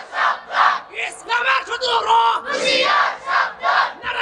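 Speech: a man preaching in a loud, raised, impassioned voice through microphones.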